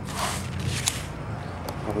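A short rustle and a click as trading-card packs and packaging are handled on a table, over a steady low hum.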